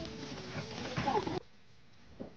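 Ears of corn still in their dry husks tossed onto a pile, landing in a run of knocks and rustles. The sound cuts off sharply about one and a half seconds in, leaving a much quieter room.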